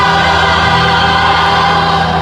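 Live gospel worship music: several voices singing together over the band, with steady held low notes underneath.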